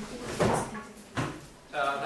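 A few dull knocks, less than a second apart, from something hard in a classroom. Near the end a voice starts.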